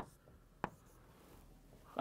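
Marker writing on a whiteboard: a sharp tap at the start, a second tap about two-thirds of a second in, then faint strokes as a line and letters are drawn.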